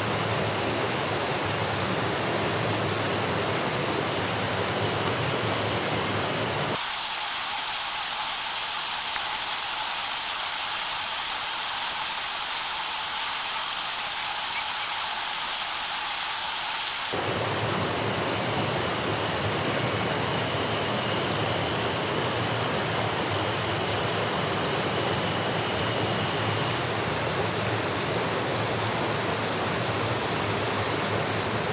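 Mountain stream running steadily over rocks. About 7 s in the sound turns thinner and hissier, its low rush gone, for about ten seconds, then returns to the full stream sound.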